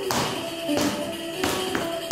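Pizzica music: a tambourine beating a driving rhythm, with strong strokes about every three quarters of a second, under a melody of held notes.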